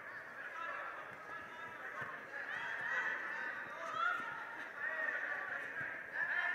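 Several voices calling and shouting over one another in a large, echoing sports hall, their pitch rising and falling, louder in the second half.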